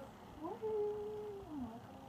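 A cat yowling: one long drawn-out call that rises, holds a steady pitch for about a second, then slides down and fades.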